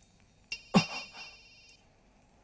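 Mobile phone ringtone: a high electronic melody that starts about half a second in and stops shortly before the end, with one short loud sound near its start.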